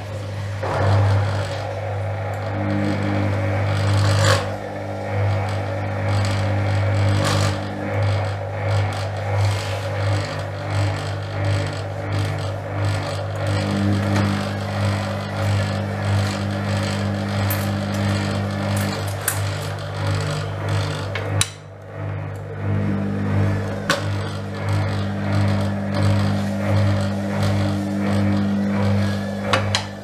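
Gorenje WA72145 front-loading washing machine spinning its drum up to speed: a steady motor hum with whining tones that come and go, and small clicks from the load, with a brief dip about two-thirds through before it picks up again.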